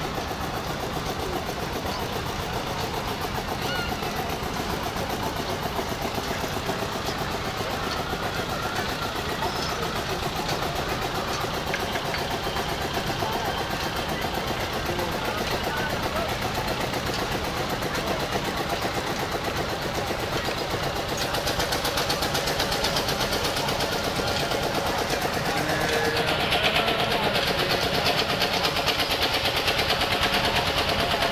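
Fairground din: a steady mix of crowd voices and running machinery, growing louder in the last few seconds.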